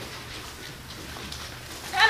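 A dog giving a short, high whine near the end, over a quiet steady background.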